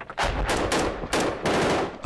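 A quick string of rifle shots, several a second, each with a short echo.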